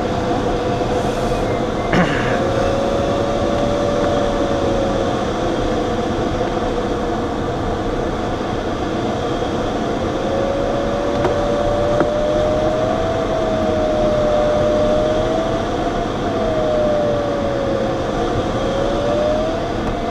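Steady rush of air over a glider's cockpit canopy in flight, with the audio variometer's tone sliding slowly up and down in pitch. The tone drops out for a few seconds in the middle, then comes back with several short upward sweeps near the end. A short click about two seconds in.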